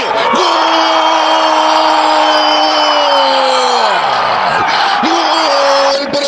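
Football commentator's drawn-out goal shout over crowd noise: one long held call that drops in pitch and breaks off about four seconds in, then a second held call starting near the end.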